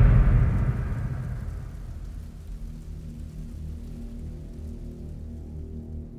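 The tail of a loud, deep boom dies away over the first two seconds. It leaves dark, low sustained suspense music, a slow horror-score drone.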